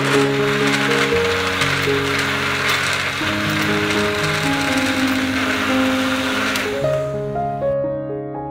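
Electric countertop blender running, churning chunks with water, and switching off about seven seconds in. Soft electric piano music plays underneath throughout.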